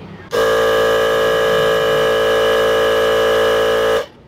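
Portable cordless tyre inflator's compressor running steadily, pumping air into a scooter tyre. It is a loud, even, humming drone that starts about a third of a second in and cuts off suddenly at the end.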